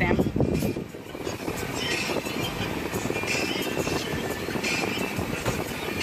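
Steady rumble of a running car heard from inside its cabin.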